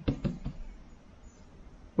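A few light knocks in the first half second as a knife blade is set against a denim strop laid over a sharpening stone, then the nearly silent stropping stroke.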